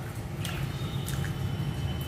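Fingers tearing tandoori roti and scooping thick curry gravy from a foil tray: a few soft wet squishes and light clicks, over a steady low hum.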